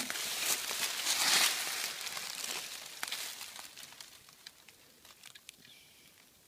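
Dry leaf litter rustling and crunching, loudest in the first second or so and dying away within about three seconds, then a few faint scattered clicks.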